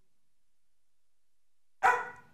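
A police dog, a Belgian Malinois, barks once, loud and sharp, near the end.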